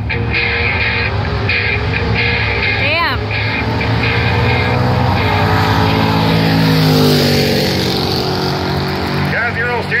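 Two drag-race cars, a turbocharged Dodge Neon SRT-4 and a first-generation F-body, accelerating hard down the strip. The engine note climbs and is loudest about seven seconds in, with music under it and an announcer's voice starting near the end.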